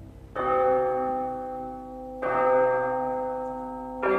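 Two deep bell strikes about two seconds apart, each ringing on and slowly fading, the second with a lower note.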